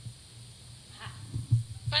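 A quiet pause in the room, picked up by a podium microphone, with a few soft low thumps about one and a half seconds in. A woman starts speaking at the very end.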